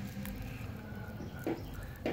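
Faint handling noise: a few light clicks and crinkles from clear plastic film being peeled off a mesh watch strap, over a low steady hum.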